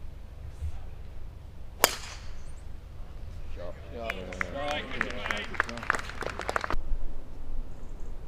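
A golf club strikes a ball with one sharp crack about two seconds in. Spectators' voices and scattered clapping follow, then cut off suddenly near the end.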